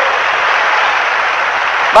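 A steady, even hiss of background noise with no speech, as loud as the noise bed under the surrounding talk.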